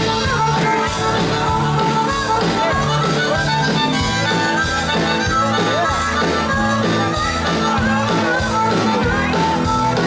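Live honky-tonk country band in an instrumental break, a harmonica taking the lead with bending notes over the guitars and a steady drum beat.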